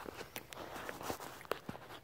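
Faint, scattered light clicks and rustling of hands handling the car seat and its slider rails.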